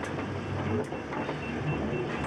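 Noise of a storm at sea heard from aboard a vessel: a low engine drone under wind and wave noise. Behind it runs a faint, rapid series of high beeps.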